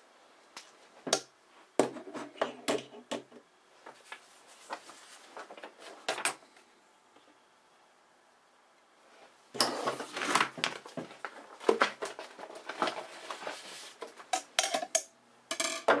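Irregular clicks, taps and rattles of hard objects handled on a wooden tabletop, in two busy spells with a quiet pause between them.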